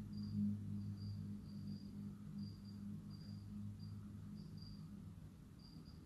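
A faint pause: a steady low electrical hum with short, high-pitched chirps repeating irregularly.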